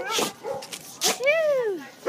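A boxer dog straining on its leash gives a drawn-out whining call that rises and then falls in pitch, after a few short noisy breaths or snuffles.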